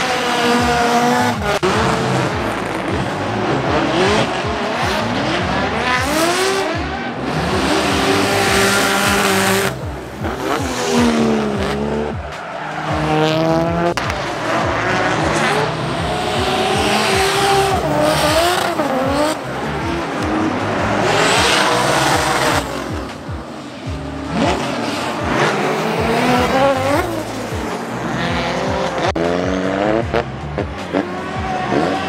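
Competition drift cars sliding: engines revving hard, their pitch repeatedly rising and falling with throttle and gear changes, over tyre squeal. At times two engines are heard at once.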